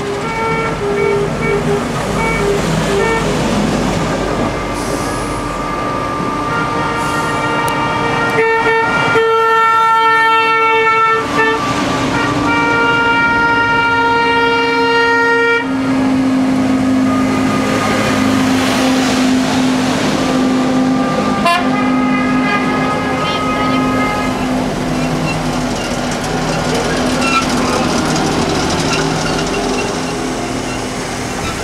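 Trolleybuses rolling past with horns sounding long, steady tones, the longest from about eight to sixteen seconds in with a short break in the middle, followed by a lower steady tone, over continuous street and vehicle noise.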